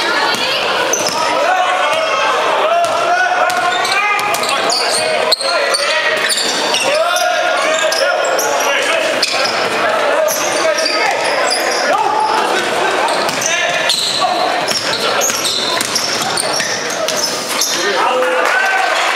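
Basketball game in a large echoing hall: the ball bouncing on the hardwood floor, short high shoe squeaks, and voices of players and spectators throughout, with one sharp knock about five seconds in.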